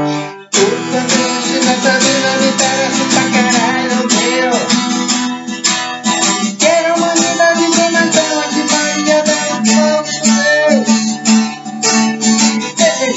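A guitar strummed steadily in chords. It stops briefly just after the start, then carries on. A man's voice sings along at times.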